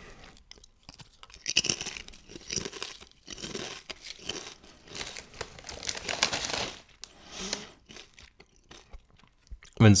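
Crisp, crackling crunch and rustle of a handful of potato chips, with the crinkling of the plastic chip bag as the chips are tipped back into it, in uneven bursts through the first seven seconds, then a few small rustles.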